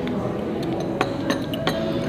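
Porcelain teacups clinking against their saucers, about four sharp clinks in the second half.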